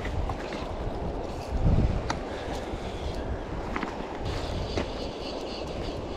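Wind buffeting the microphone over the steady rush of a shallow river, with a few faint isolated clicks.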